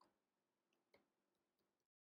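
Near silence, with a few very faint computer keyboard keystroke clicks, spaced irregularly, as code is typed. The sound drops to dead silence just before the end.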